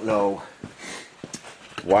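A man's voice: a drawn-out filler sound at the start, then speech resumes near the end, with a few faint small clicks in the quiet between.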